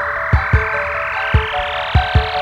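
Instrumental passage of a J-pop track: a drum beat of low kick thumps under held keyboard notes, with a rising noise sweep climbing steadily in pitch throughout.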